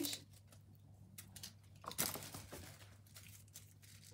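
Small packaging wrappers rustling and crinkling as they are handled and opened, with a sharper crackle about two seconds in.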